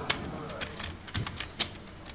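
Poker chips clicking together as they are handled at the table: a scatter of sharp, irregular clicks, about eight in two seconds.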